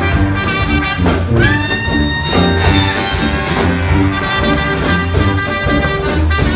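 Live traditional jazz band playing an instrumental swing passage: horns led by trumpet over a walking sousaphone and upright-bass line, with guitar and drums keeping the beat. A horn holds one long note about a second and a half in.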